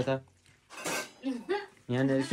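A short clatter of stainless-steel plates and utensils at the table, about a second in, between snatches of voice.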